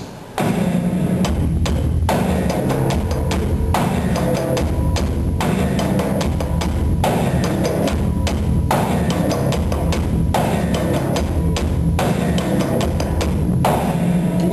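Live instrumental music on the Magic Pipe, a homemade steel-pipe instrument with a bass string and percussion triggers. A deep, pulsing bass line runs with sharp percussive hits in a steady groove, starting about half a second in.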